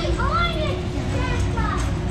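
Children's high-pitched voices calling out in rising and falling sweeps, over a steady low rumble and hum.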